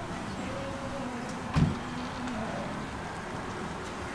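Low steady hum of vehicle traffic from the street, with a faint engine tone in the first half and one short dull thump about a second and a half in.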